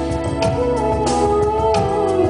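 A woman singing live into a microphone over a backing track with a drum beat. She holds a long note with vibrato that slides down near the end.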